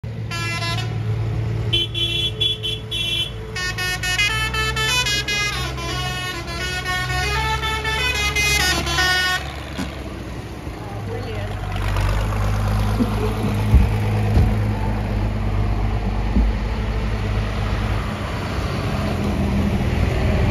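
A vehicle horn sounding a quick run of notes at changing pitches for about nine seconds, over the low running of tractor diesel engines. After that the horn stops and the tractors' engines grow louder as they drive past.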